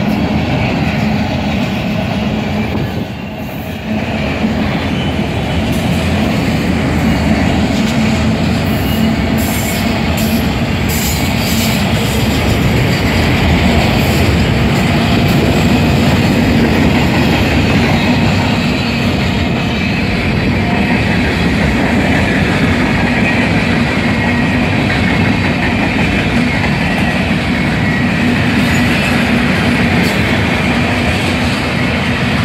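Freight train cars rolling past close by: a loud, steady rumble of steel wheels on the rails, with a run of clicks and clanks around ten seconds in.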